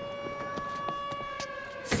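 A siren sounding one steady, unchanging pitch, dipping slightly near the end, then a loud sudden bang just before the end as a glass door is pushed open.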